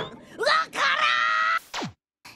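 A cartoon boy's voice letting out a long, high wail of disgust at the taste of terrible food, followed near the end by a quick downward swoop in pitch.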